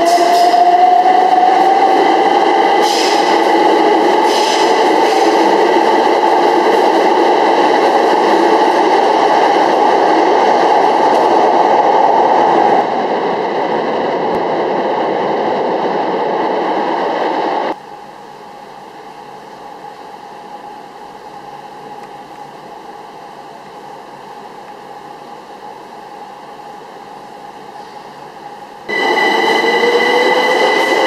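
Electric multiple-unit train running along a station platform, its motor whine rising slowly in pitch over a steady rushing hiss. About two-thirds through the sound cuts suddenly to a much quieter steady hum, and the loud train sound with its rising whine comes back abruptly near the end.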